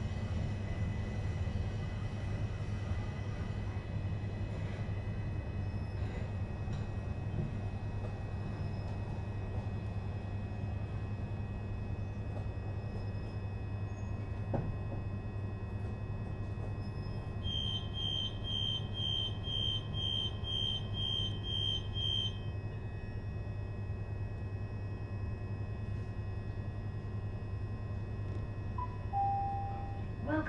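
Class 376 electric train standing at a platform, its equipment giving a steady low hum. About halfway through comes a run of about ten door warning beeps, two a second for some five seconds, as the doors close, and near the end a short two-note chime ahead of an on-board announcement.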